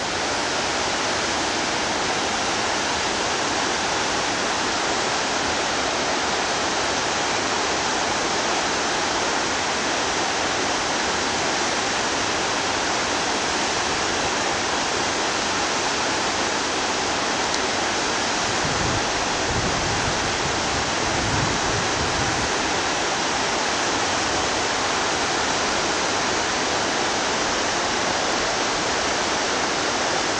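Steady rush of a fast-flowing mountain stream over stones, an even, unbroken hiss, with a few low rumbles about two-thirds of the way through.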